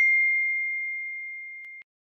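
A subscribe-button bell ding sound effect: one clear, high, pure tone that rings down steadily and cuts off abruptly near the end.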